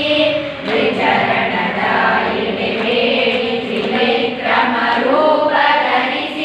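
A large group of girls singing a song together in unison, reading the words from sheets, the voices held in long sung lines.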